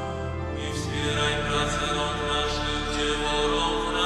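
Church pipe organ playing held chords under a sung psalm chant.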